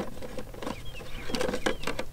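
Folded paper caterpillar being handled on the table, giving short, irregular paper rustles and crinkles that bunch up in the second half, with a bird chirping faintly in the background.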